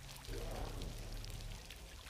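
Rain falling on a hard wet surface in a TV drama's soundtrack, over a low steady drone; the rain swells about a third of a second in.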